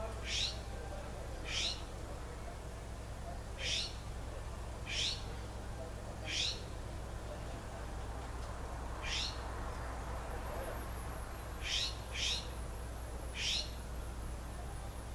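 A bird repeating a short rising call nine times at uneven gaps, with a fainter, very high falling series of notes after about ten seconds, over a steady low hum.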